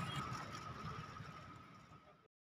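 Outdoor street background noise with a steady thin high-pitched tone, fading out steadily toward silence.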